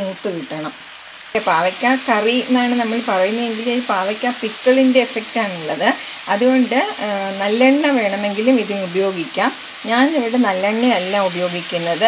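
A woman's voice speaking over oil sizzling in a pan as diced ripe bitter gourd is stir-fried with a spatula.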